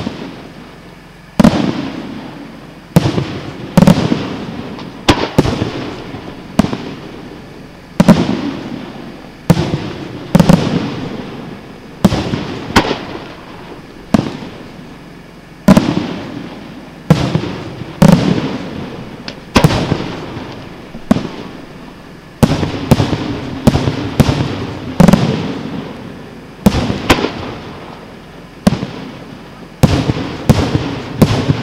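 Aerial fireworks shells bursting one after another: a sharp bang about every second, some coming in quick pairs, each dying away over about a second.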